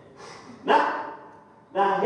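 A man's short, sharp shouted exclamation about two-thirds of a second in, after a breathy intake. A loud voiced cry starts again near the end: a preacher's emphatic delivery.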